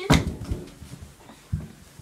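A sharp knock right at the start, then a duller thump about a second and a half later, in a small room.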